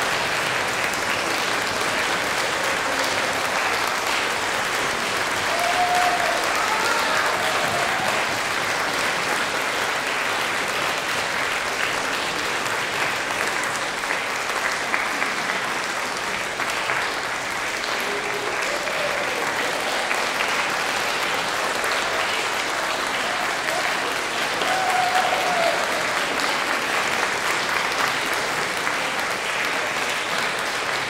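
Audience applauding steadily, sustained throughout.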